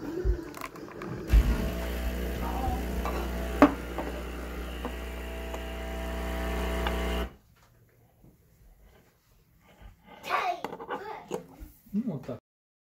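A steady mechanical hum with a buzzing tone and some hiss starts about a second in, runs for about six seconds with one sharp click in the middle, and cuts off suddenly. Voices follow near the end.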